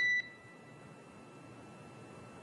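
A single short electronic beep on the mission radio loop, right after a controller's call to the spacecraft, marking the end of that transmission. Faint steady radio channel hiss follows.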